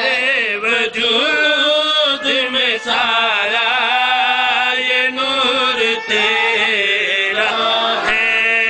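Men's voices chanting a devotional verse: a lead voice sings a wavering, ornamented melody over a steady held note from the men around him.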